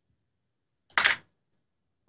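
Silence broken once, about a second in, by a single short noise burst, like a click or a brief hiss.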